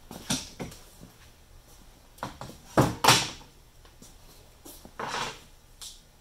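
Thin kerfed luan plywood sheet being lifted and flexed on sawhorses: a handful of short wooden knocks and scraping, flexing noises. The loudest two knocks come close together about three seconds in, and a longer scrape comes near five seconds.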